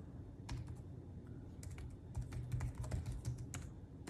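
Typing on a computer keyboard: quiet, irregular key clicks in short flurries, busiest in the second half.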